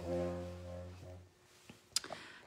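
A steady low-pitched hum fading out over about a second, followed by a single click near the end.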